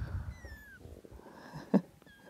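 A young kitten mewing: one thin, high mew that falls in pitch about half a second in. A short, sharp thump near the end is the loudest sound.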